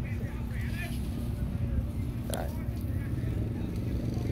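A steady low rumble with faint voices of people talking in the background.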